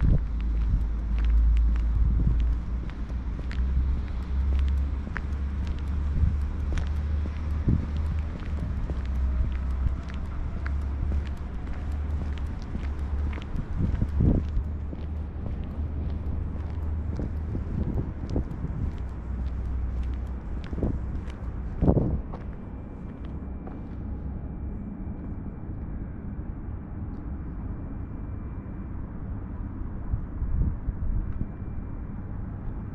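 Footsteps on a paved path, a string of short light clicks, over a steady low rumble of outdoor ambience. There are heavier knocks at about the middle and about two-thirds of the way through, and a faint steady high tone in the last several seconds.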